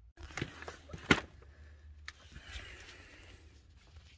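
A few sharp knocks, the loudest about a second in, followed by a scuffing rustle: the handheld phone camera being handled and moved about, close to tools on the ground.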